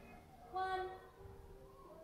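A short high-pitched voice sound, held for about half a second, about half a second in.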